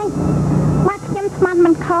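Spoken film dialogue; for about the first second only a steady low hum is heard before a voice speaks.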